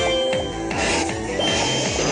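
Background music, with a short burst of noise laid over it about a second in.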